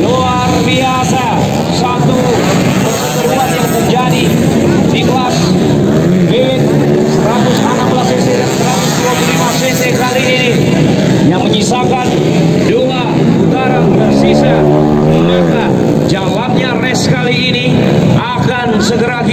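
Motocross dirt bike engines revving up and down as the bikes race around the dirt track, the pitch rising and falling continuously.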